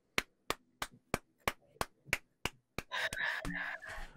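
One person clapping slowly and evenly, about nine claps at three a second. Near the end, a second or so of rough, noisy sound follows.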